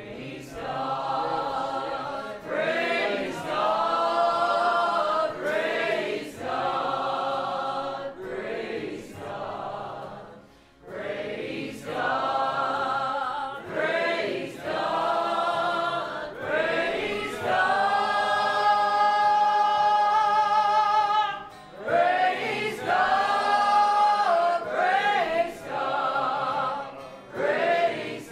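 A church congregation singing a gospel worship song together, in phrases with short breaks between them and one long held note with vibrato past the middle.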